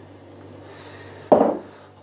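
A single knock a little over a second in, like a glass beer bottle being set down on a hard counter, over a low steady hum.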